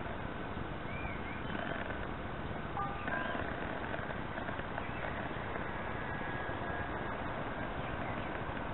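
Wind rumbling on the microphone, with a few short chirping bird calls. A thin steady whine comes in about three seconds in and fades shortly before the end.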